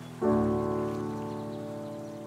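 Slow solo piano: a chord struck about a quarter of a second in, left to ring and slowly fade.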